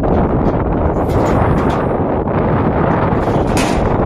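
Wind blowing across the microphone: a loud, steady low rumble of wind noise.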